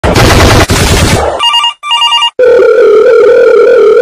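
A telephone sound effect: a loud burst of harsh noise, then two short ring bursts of paired tones about 1.5 seconds in, then a steady held tone from about two and a half seconds in, just before a recorded out-of-service message.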